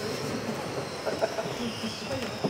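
Radio-controlled model racing cars running on an indoor carpet track, a steady high whine from their motors and drivetrains, with faint hall chatter underneath.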